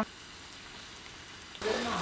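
A frying pan of browned sausage sizzling faintly, then near the end a sudden louder sizzle as pasta cooking water is ladled in over the stracchino and the sauce is stirred.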